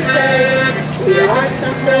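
Live Swedish folk dance music with accordion and fiddle, a steady tune of held notes. People's voices are mixed in, one rising sharply in pitch about a second in.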